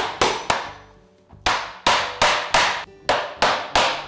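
Hammer driving a nail through a scrap-wood cleat into pine 2x6 boards: two blows, a pause of about a second, then a quick run of about seven blows, roughly three a second.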